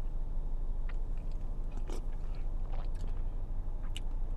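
A person sipping broth from a plastic spoon and tasting it, with a few faint mouth clicks about a second apart, over a steady low rumble in the car cabin.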